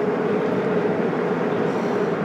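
Steady road and engine noise heard inside the cabin of a car cruising on an expressway, with a faint steady hum.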